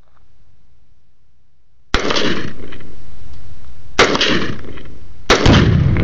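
Three gunshots about two seconds, then about a second, apart. The third is the heaviest, a deeper boom as an explosive target at the berm goes off in a cloud of dust.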